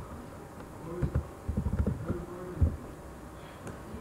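Faint steady electrical buzz from the recording setup, with scattered soft low knocks from computer keys being typed between about one and three seconds in.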